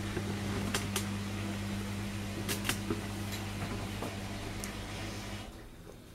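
Steady low electrical hum from a running kitchen appliance, with a few faint clicks, cutting off about five and a half seconds in.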